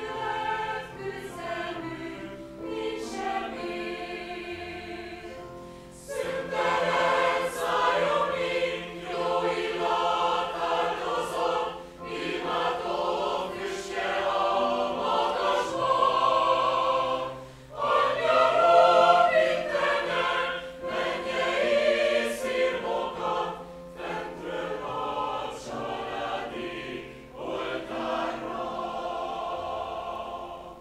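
Mixed choir singing in phrases, which grow louder from about six seconds in.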